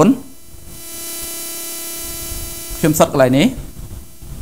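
Steady electrical hum with hiss, a buzz of even tones in the recording, fills the pause between a man's speech at the very start and again about three seconds in.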